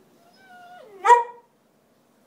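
Whippet giving a whine that falls in pitch, then one short, loud bark about a second in, begging for a biscuit.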